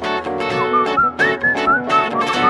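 Instrumental pop music: plucked guitar chords struck in a steady rhythm under a high, sliding, whistle-like lead melody.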